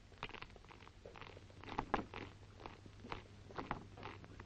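Boots of a file of soldiers marching on a hard parade square: faint, uneven footfalls of several men out of step with one another, over the steady low hum of an old film soundtrack.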